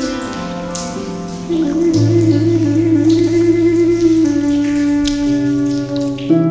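Native American flute and Celtic harp playing a slow, soothing instrumental. About a second and a half in, the flute holds a long note with vibrato over low harp notes, with a rain-like patter of nature sounds beneath.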